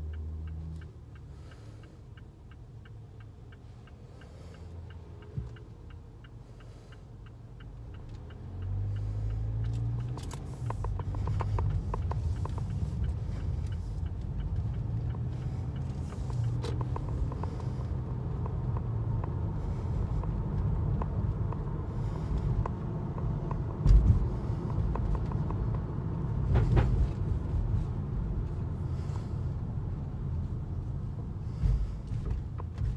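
Inside a car's cabin: a turn signal ticks steadily while the car waits at a light. About nine seconds in the car pulls away, and a steady low engine and road rumble rises and holds, with two sharp thumps near the end.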